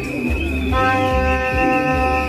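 Plastic vuvuzela blown in one long, steady note, starting under a second in. Under it are a steady high whistle-like tone and a repeating low beat from a street march's music.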